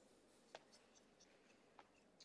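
Near silence: faint room tone with two soft clicks, one about half a second in and one near the end.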